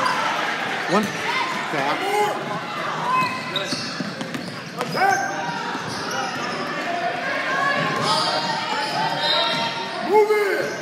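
Overlapping voices of spectators and players calling out in a gymnasium, with a basketball bouncing on the hardwood court a few times.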